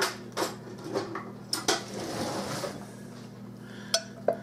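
Metal spoon clinking against a glass bowl: a handful of separate sharp clinks and knocks, the strongest right at the start, about a second and a half in, and just before the end.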